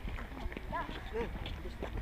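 Footsteps on an asphalt path, irregular and light, with faint voices in the background.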